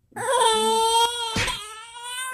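Baby crying in one long, steady wail that starts just after a moment of silence and tails off near the end. She is upset that her bottle of milk is finished.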